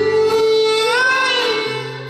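Live acoustic folk music: a held, bright lead note that bends upward in pitch about a second in, over steady sustained low chords, easing off slightly toward the end.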